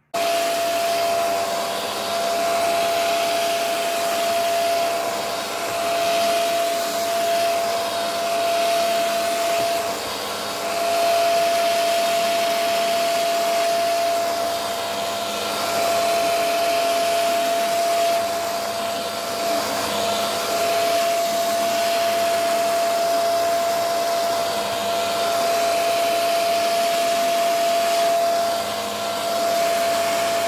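Fantom Pratic-S P1200 corded stick vacuum switched on and running with a steady high motor whine while its mini turbo brush head is pushed over fabric, the level swelling and dipping slightly.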